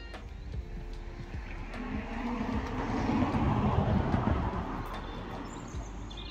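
A vehicle passing by: its noise swells over a couple of seconds, peaks in the middle, then fades away.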